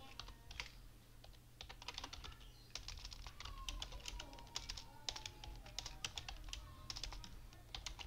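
Typing on a computer keyboard: rapid, irregular keystrokes, in quick runs from about a second and a half in.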